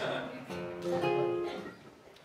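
Nylon-string classical guitar: a chord strummed about half a second in and left to ring, fading away.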